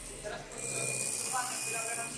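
Electric hand mixer running, its beaters whisking pancake batter in a bowl. The motor's buzz grows louder about half a second in.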